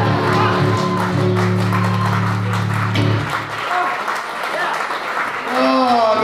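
A resonator guitar's closing chord rings and stops about three seconds in, while an audience applauds. A man's voice starts speaking near the end.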